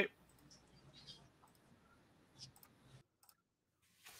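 A few faint, sparse clicks over a faint low background hum; the background cuts off abruptly about three seconds in.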